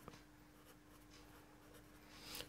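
Near silence: faint strokes of a pen writing on paper, over a faint steady hum.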